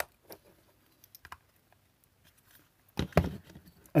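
Light clicks and taps of a plastic steering-wheel clock-spring module being handled and pried apart at its clips, with a louder cluster of plastic clatter about three seconds in.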